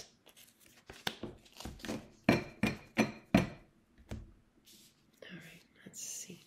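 Oracle cards being dealt one after another onto a table: a quick run of about ten light slaps and taps of card on card and tabletop, then soft rustling of cards near the end.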